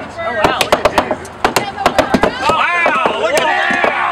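Several short-handled sledgehammers striking a painted concrete-block wall at once, in quick, irregular blows. Voices talk and laugh over the hammering from about halfway through.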